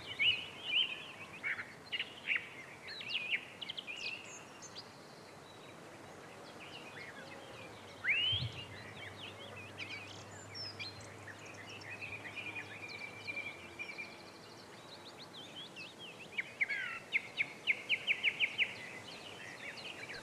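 Several small birds singing and calling, a busy mix of short chirps and whistles, with one rising note about eight seconds in and a fast run of repeated notes near the end.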